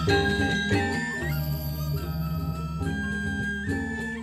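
Balinese gamelan music: bamboo suling flutes hold long, slightly bending notes over the sustained ring of the bronze metallophones.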